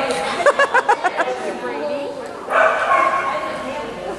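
A dog barking in a quick string of about six short, high yips in the first second or so, followed by a person's voice.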